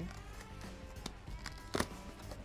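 Quiet background music, over which a knife cutting open a cardboard box gives a short click about a second in and a louder sharp snap near the end as the tape and flaps give way.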